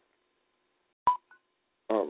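A click and a short telephone beep about a second in, followed by a fainter, higher blip a moment later, as heard over a phone-in call line.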